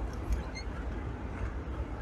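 Steady low rumble of a moving car heard from inside the cabin: engine and tyres on a wet road, with a faint hiss of road and air noise above it.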